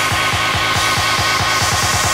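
Club techno/tech-house track at a build-up: a drum hit repeating faster and faster into a quick roll, with a hissing noise sweep swelling above it toward the end.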